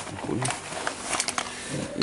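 A few light clicks and scrapes as a pen tip is set into and worked along the aluminium lower guide rail of a fly-screen door, loosening the stones, dirt and sand that collect in it. Faint speech fragments come in and out.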